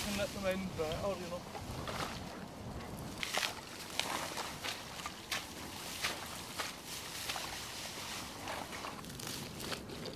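Dry reeds rustling and crackling in irregular bursts as they are gathered by the armful and pushed into a reed hide.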